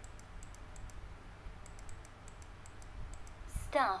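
Light, quick clicks of a computer keyboard typing a short word, in two runs. Near the end a voice says "stuff".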